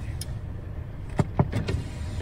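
Steady low rumble of a car heard from inside the cabin, with a few brief knocks just past the middle.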